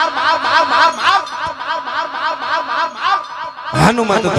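Harmonium holding steady notes while a voice makes quick, repeated rising sounds, about four a second. Just before the end, tabla strokes and singing start up loudly.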